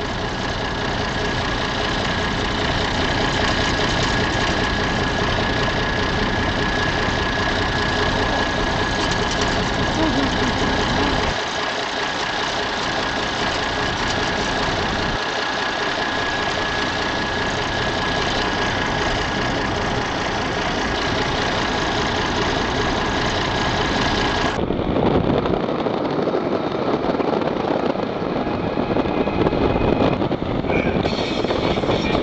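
Surf breaking, with an engine idling close by and a thin steady whine over it. About 25 seconds in, it cuts abruptly to a louder rush of surf and wind.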